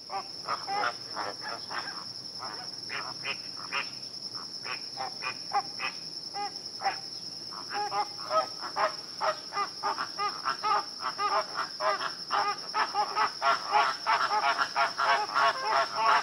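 Nature ambience: a steady, high-pitched insect trill with many short bird chirps over it, the chirping growing busier toward the end.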